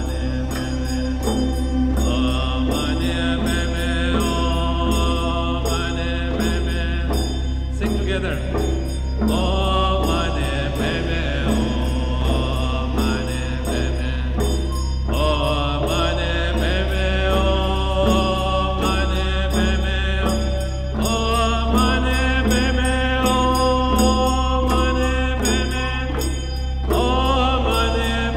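Music with chanted, mantra-like voices over a steady low drone, the melody shifting in phrases every few seconds.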